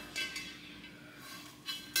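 Faint handling of a small round tray in the hands, with a light knock just after the start and another shortly before the end.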